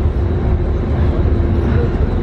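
Passenger ferry's engines running with a steady low rumble and a faint constant hum.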